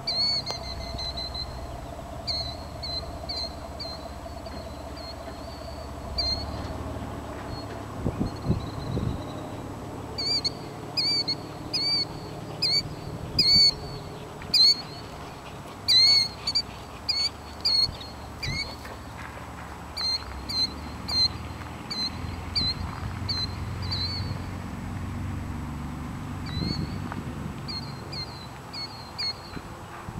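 A bird calling over and over in short, sharp, high-pitched notes, in quick runs of several calls that are loudest around the middle, over a low background rumble.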